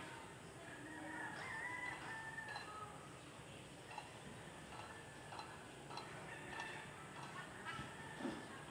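A faint rooster crow about a second in, one call lasting around two seconds, followed by quiet ambience with scattered small clicks.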